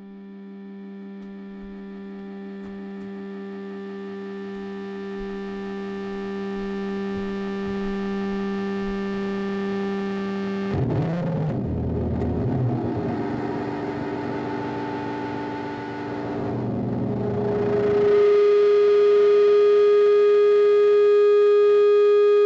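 Distorted electric guitar: one held low note swells up slowly from silence, breaks about eleven seconds in into a noisy, jumbled stretch, then settles into a loud held higher note for the last few seconds.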